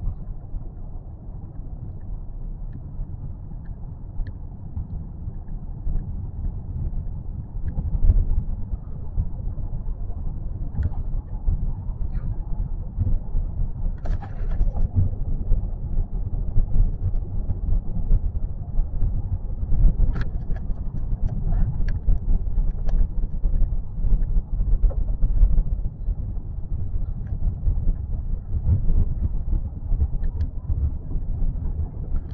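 A car driving, heard from inside its cabin: a steady low rumble of engine and road noise, with a few faint clicks and knocks.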